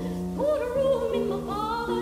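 Operatic soprano singing a spiritual with piano accompaniment: two sung phrases with vibrato, one beginning about half a second in and the next near the end, over held piano chords.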